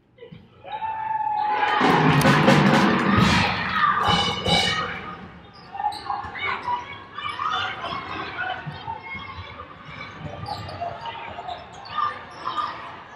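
Arena crowd cheering and shouting after a free throw, swelling loudly about a second in and dying away by about six seconds. Then the basketball bouncing and sneakers squeaking on the hardwood as live play resumes.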